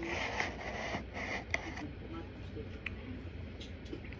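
A plastic spoon scraping and digging into corn starch inside a box's paper liner, with paper crinkling and small clicks. The scraping is loudest in the first two seconds, then dies down.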